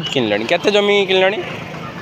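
A person speaking for about the first second and a half, over a low steady hum that carries on after the voice stops.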